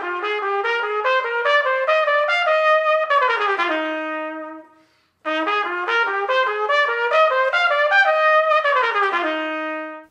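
Solo trumpet playing a simple eighth-note exercise with jazz articulation: the eighth notes slightly rounded, with a bit of texture at the front of each note. It is played twice, with a short pause between. Each time the line climbs in steps, then runs down to a held low note.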